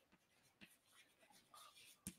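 Very faint scratching and tapping of chalk on a blackboard as a word is written in short strokes.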